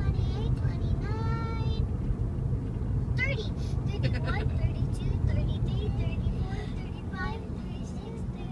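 Steady low road rumble inside a moving car, with young girls' high voices over it: a long held sung note about a second in, then short snatches of voice.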